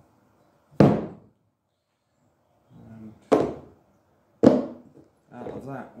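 Three heavy clunks of cut steel pieces being set down on a steel chequer-plate workbench: one about a second in, then two more a second apart past the middle, each ringing briefly.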